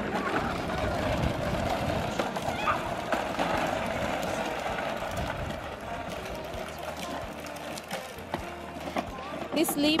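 Hard plastic wheels of a toddler's ride-on toy rolling over a concrete driveway, a rattling rumble that eases off after about six seconds.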